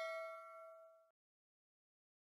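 A bell-like chime dying away over about the first second, then silence.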